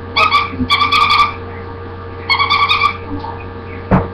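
A dog whining in three short, high-pitched bursts over a steady electrical hum, with a bump near the end.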